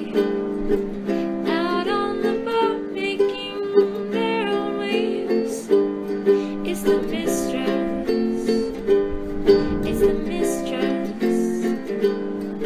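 Background music: a plucked-string tune, ukulele-like, over steady chords.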